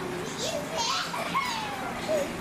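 Overlapping chatter of onlookers, children's voices among them, with a brief high-pitched cry about a second in.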